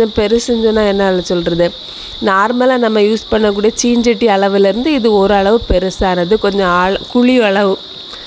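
A woman talking almost without pause, over a steady high-pitched chirring of crickets.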